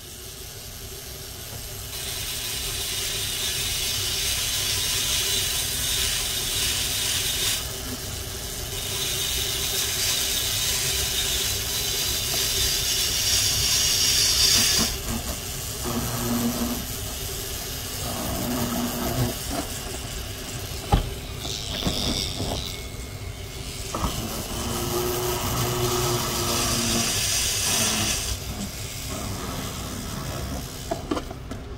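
Rotary carving tool spinning a sintered diamond bit at about four to six thousand RPM, grinding wet fire agate under light pressure. It runs with a steady motor hum and comes in spells of high hissing grind a few seconds long as the bit touches the stone, with one sharp click about twenty seconds in.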